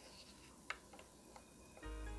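Near silence with one small sharp click of the watch movement being handled in its plastic holder about two-thirds of a second in, and a fainter click later; quiet background music comes in just before the end.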